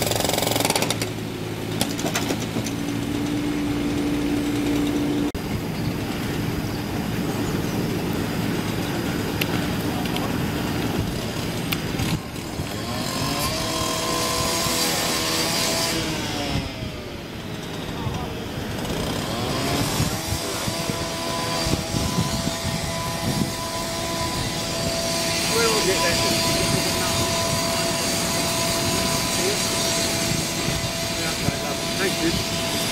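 Optare Versa single-deck bus's diesel engine idling, then pulling forward with a whine that rises and falls in pitch over several seconds, before settling back to a steady idle with a constant whine.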